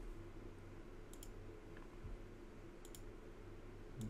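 Two soft computer mouse clicks, each a quick double click-clack, about a second in and again near the three-second mark, over a faint steady hum.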